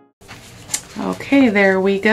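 A woman's voice, drawn out and wordless, starting about a second in after a single soft click.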